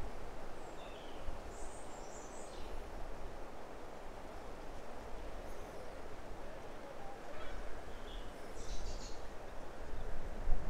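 Outdoor ambience: a steady low background rush with a few short, high bird calls, once about two seconds in and again near the end.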